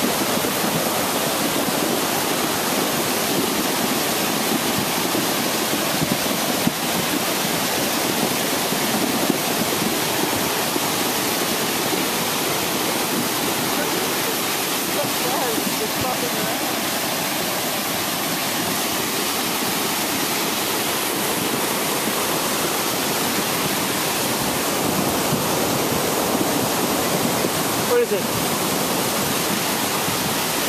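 A small woodland stream in spate, its fast, muddy floodwater rushing and churning over rocks in a loud, steady rush.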